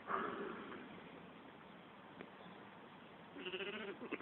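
A sheep bleats once, faintly, near the end, after a quiet stretch.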